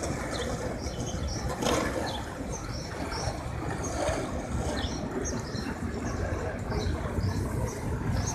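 Outdoor city ambience: small birds chirping often, over a low steady rumble.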